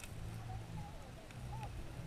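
Muffled underwater sound of sea water around a submerged GoPro camera in its housing, with a low steady hum and faint wavering muffled tones above it.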